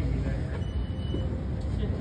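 Steady low rumble of a moving elevator car, heard inside the cabin, with a faint thin high beep briefly about half a second in.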